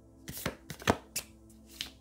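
A deck of cards being shuffled by hand: about half a dozen short, separate taps and slaps as cards drop from one hand onto the pack.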